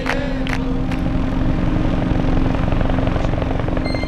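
Heavy transport helicopters, CH-53 type, flying past. Their rotors beat in a rapid, steady low pulse over a constant engine drone.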